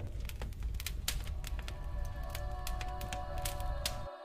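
Musique concrète tape collage: a low rumble strewn with dense crackles and sharp clicks. About halfway through, a sustained chord of steady tones fades in beneath it.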